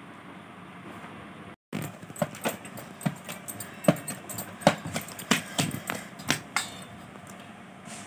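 Hands kneading a stiff ball of maida dough in a steel plate: a run of irregular sharp clicks and soft knocks as the dough is pressed and turned against the metal. They start after a brief cut about two seconds in and fade out near the end, over a faint steady hiss.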